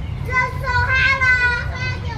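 A child's high voice calling out in one long drawn-out call, starting about a third of a second in and held for about a second and a half, over a steady low rumble.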